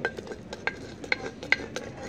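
Wooden spoon scraping and knocking inside a clay pot to scoop out the stew, a quick irregular run of sharp clinks, each ringing briefly off the clay.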